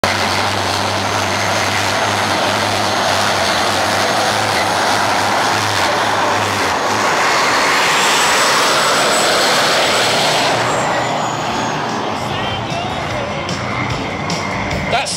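Homemade gas turbine jet engine on a go-kart running: a loud, steady roar with a high whistle that climbs about halfway through. The whistle then sinks and the roar eases off over the last few seconds.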